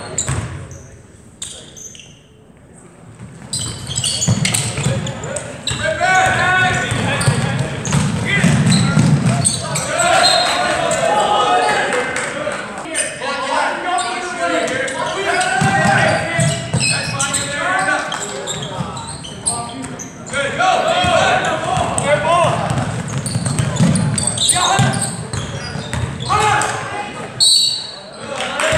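A basketball bouncing on a hardwood gym floor while the crowd chats in a large gym, during a free-throw stoppage. The chatter is quieter for the first few seconds, then picks up and carries on.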